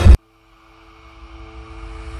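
Horror film score: a loud hit cuts off abruptly just after the start, a brief silence follows, then a low drone holding two steady tones fades in and slowly swells.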